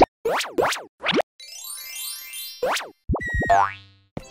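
Cartoon sound effects: a string of quick springy boings and pops, a rising sweep in the middle, and a few fast falling tones near the end, as the pieces of a toy station pop into place.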